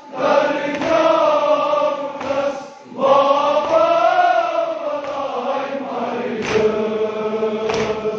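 Men's voices chanting a noha, a Shia mourning lament, in long drawn-out phrases. There is a short break for breath near the start and another about three seconds in, then a long phrase that rises and falls in pitch.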